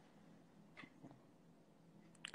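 Near silence broken by a faint, short cat meow just under a second in, with a fainter trace of it just after.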